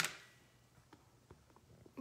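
A single sharp click right at the start, then a few faint light ticks, from handling fabric squares while laying them out on a quilt.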